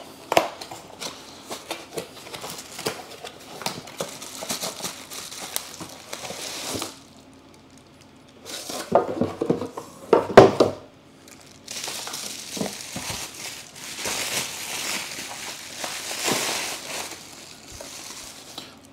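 A cardboard box being opened and handled, with a few louder knocks about ten seconds in, then bubble wrap crinkling as it is peeled off a plastic tool case.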